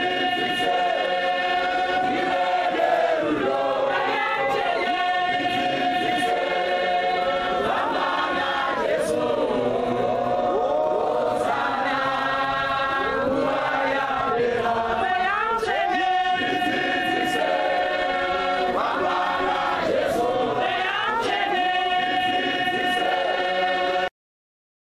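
Choir singing, many voices holding long notes together, which cuts off suddenly at the end.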